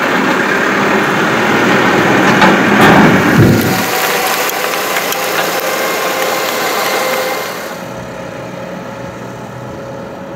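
Tractor's four-cylinder turbo-diesel engine running under load as it drives through a flooded rice paddy, with water and mud churning under its iron wheels. It is loudest about three seconds in, then fades as the machine moves away, dropping further near eight seconds.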